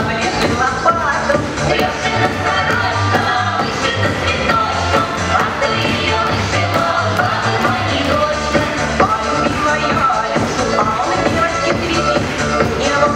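Upbeat dance music with a steady beat and a busy melody.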